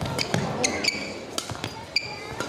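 Badminton rally: sharp cracks of rackets hitting the shuttlecock and players' shoes squeaking and thudding on the court mat. There are several short squeaks, a couple around the middle and another at the end.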